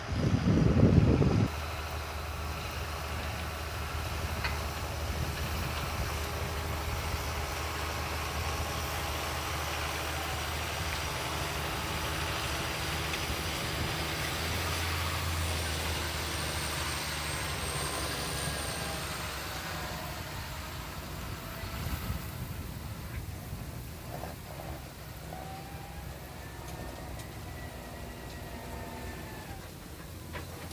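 John Deere 6930 tractor's six-cylinder diesel running steadily under load as it pulls an Alpego seed drill, fading as it moves away in the second half. A loud gust of wind hits the microphone in the first second and a half.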